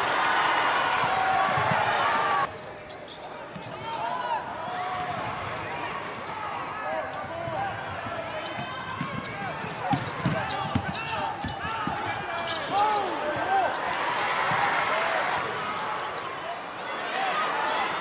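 Live basketball game sound in an arena: a ball dribbling on the hardwood, many short sneaker squeaks, and crowd and player voices. About two and a half seconds in the sound cuts and drops quieter.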